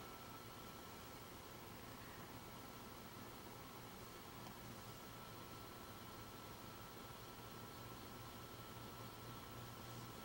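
Near silence: room tone of steady hiss with a faint low hum and a thin, steady high whine.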